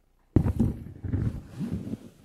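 Handling noise from a handheld microphone being taken in hand: a sudden loud rumbling and rustling that starts about a third of a second in and goes on unevenly for about a second and a half.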